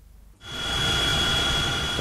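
Steady engine noise inside a helicopter cockpit, starting suddenly about half a second in, with a thin high steady whine over it.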